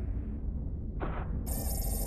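A deep steady rumble, with a short hiss about a second in, then a shrill, buzzing electronic ringing that sounds for most of a second, like an alarm bell.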